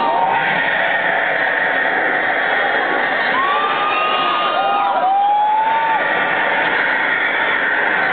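Concert crowd cheering and shouting: a steady roar of many voices, with a few long, held shouts standing out above it in the middle.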